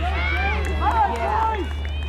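Several voices of spectators overlapping, talking and calling out, some raised, over a steady low rumble.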